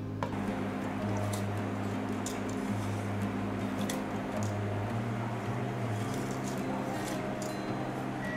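Water boiling in a stainless steel stockpot, with a few light ticks as a handful of dried cassia seeds is dropped in, over soft background music.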